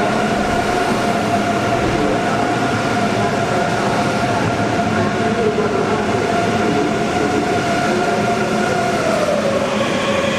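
Deutsche Bahn ICE 3 high-speed electric train moving slowly along the platform, its steady two-tone electric whine over a running rumble. The whine falls in pitch about nine seconds in.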